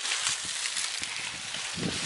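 Hands pushing loose soil into a planting hole around a coffee seedling: soft rustling and crumbling of earth and dry leaves over a steady outdoor hiss.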